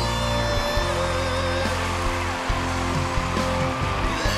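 Rock power-ballad music, with a male singer holding a long high note over the band's sustained backing.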